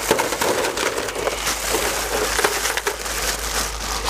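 Ice cubes poured from a plastic bag into an aluminium foil pan, a steady dense clatter of many small clicks as the cubes rattle in. It starts abruptly and runs without a break.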